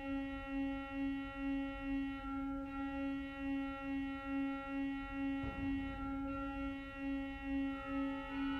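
Cavaillé-Coll pipe organ holding a soft sustained chord, its lowest note wavering evenly about two to three times a second.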